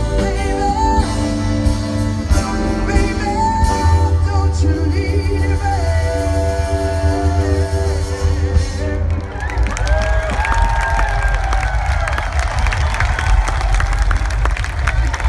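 A live drum and bass big band playing, with a singer's voice and held chords over a heavy bass line. About nine seconds in the held chords stop and a large crowd cheers and whoops over the continuing bass.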